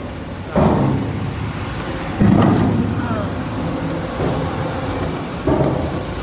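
A vehicle engine idling steadily with a low hum, with short bursts of voices about half a second in, about two seconds in and near the end.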